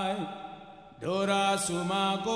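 Men's voices singing a chant-like line in Surinamese kawina music. The singing fades out just after the start and comes back in about a second in, with long held notes.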